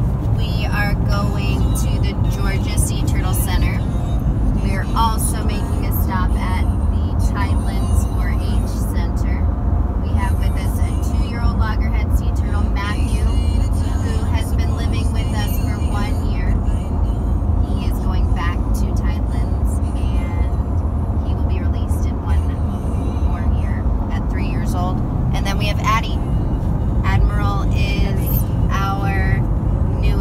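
Car cabin at highway speed: steady low road and engine rumble throughout, with voices and music over it.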